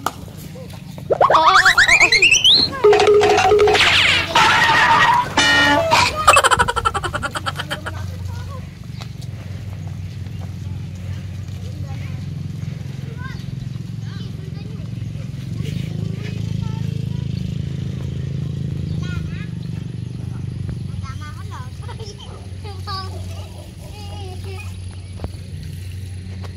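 Loud shouting and calls from people urging on a carabao as it strains to pull a loaded rice cart out of mud, lasting about six seconds. A steady low hum continues beneath it and afterwards, with occasional faint voices.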